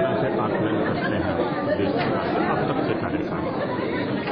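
Indistinct talk of several voices at once, chatter that carries on at speaking level throughout.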